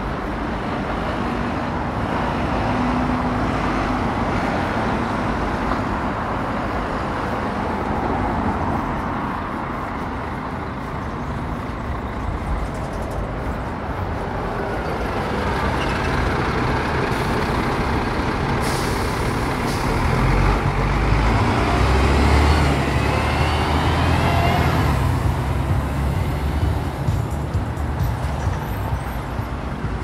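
Busy road traffic, cars and buses passing steadily. A bus goes by close about two-thirds of the way through, its engine rumble the loudest sound, with a rising whine just after.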